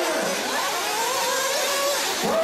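Nitro RC buggies' small glow-fuel engines running on the track, their pitch rising and falling as the throttles are worked.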